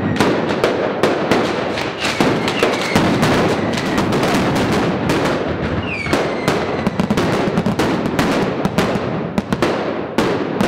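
Mascletà firecrackers going off in a rapid, continuous barrage of loud cracks, with a few short whistles falling in pitch, breaking into separate sharp bangs near the end.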